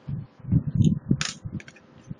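Small laptop parts being handled during reassembly: a few soft low knocks, then a sharp click a little past the middle and a few lighter clicks after it.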